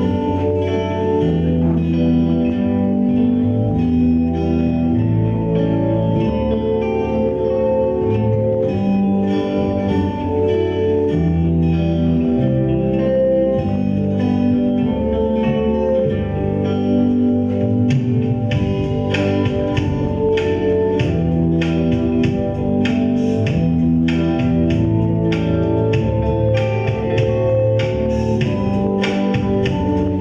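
Acoustic guitars playing an instrumental piece together: picked, sustained notes over a low bass line. Past the middle, sharper strummed chords come in on a steady beat.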